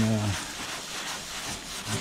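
Scotch-Brite pad scrubbed back and forth over the bottom of a metal wing fuel tank, wet with Simple Green cleaner: a steady scratchy rubbing.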